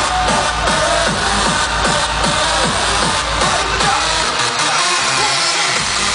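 Hardstyle dance music played loud over a festival main-stage sound system, heard from within the crowd. The pounding kick and bass drop out about four seconds in and come back just before the end.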